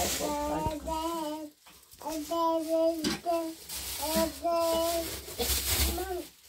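A toddler's voice babbling in drawn-out, sing-song vowels, three or four phrases with short breaks between them.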